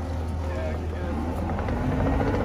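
Compact track loader's diesel engine running with a steady low drone as the machine creeps down the ramp toward the barge.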